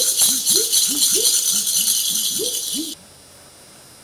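Loud rattling, like a shaker or rattle in the stage music, for about three seconds, then cutting off suddenly, over a low, repeating swooping sound.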